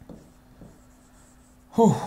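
Pen strokes and light taps of a stylus writing on the glass of an interactive display, faint, over a low steady hum. A short loud burst of a man's voice comes just before the end.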